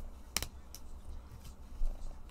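Panini Prizm football trading cards being handled and shuffled between the hands: one sharp click about half a second in, a fainter tick after it, and a soft bump near the end.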